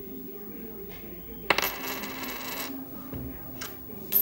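A coin hitting a wooden tabletop about one and a half seconds in, ringing brightly for about a second, then a lighter click near the end.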